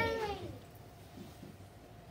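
The tail of a child's drawn-out, exclaimed "Very!", its pitch sliding down as it fades out about half a second in; after that, quiet room tone.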